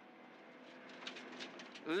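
Subaru Impreza WRX STi rally car's turbocharged flat-four engine and tyre noise on gravel, heard faint and steady from inside the cabin, swelling slightly about a second in.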